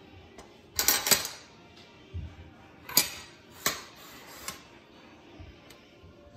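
Cutlery and dishes clinking on plates at a table: a few sharp clinks about a second in, then single clinks spaced out over the next few seconds.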